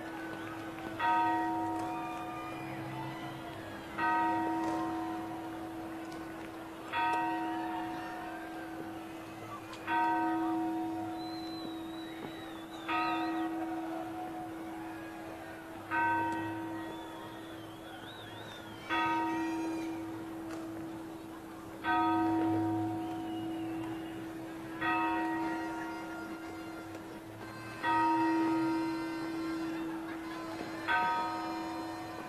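A large church bell tolling slowly at midnight to ring in the New Year. It strikes about once every three seconds, ten strokes in all. Each stroke rings out and fades over a steady hum that carries on between the strokes.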